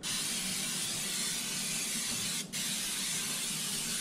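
Aerosol cooking-oil spray hissing steadily onto the hot grids of a waffle iron, in two long sprays with a brief break about two and a half seconds in.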